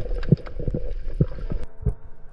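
Underwater sound picked up through an action camera's waterproof housing: a low rumble with a faint steady hum and several dull, irregularly spaced thumps. It cuts off abruptly near the end and continues more quietly.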